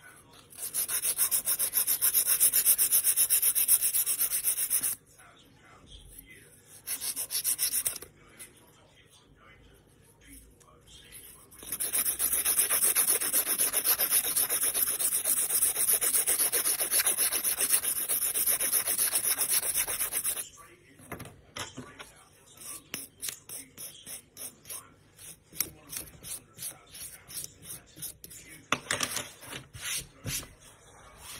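Hand-held nail file rasping back and forth across a false nail: a steady run of filing for about four seconds, a short burst, a longer run of about nine seconds, then scattered short strokes near the end.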